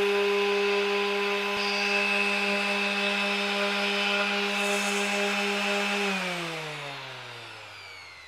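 Bosch GEX 125 random orbital sander's 290-watt electric motor running steadily with an even hum, the pad spinning free. About six seconds in it is switched off and winds down, its pitch falling and fading as the pad slows.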